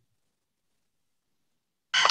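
Near silence, a dead-quiet pause, until a woman's voice starts speaking right at the end.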